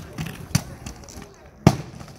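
Inline skates landing on stone steps: three sharp clacks of wheels and frames striking the stone, the loudest about one and a half seconds in.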